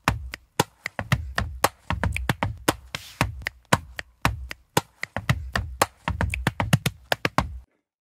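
Multi-track layered body percussion playing a fast rock groove: sharp chest slaps, finger snaps and claps in a tight even rhythm, with low thumps underneath. It stops abruptly near the end.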